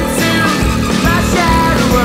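Rock music playing: a full band with a wavering lead melody over a dense, driving low end.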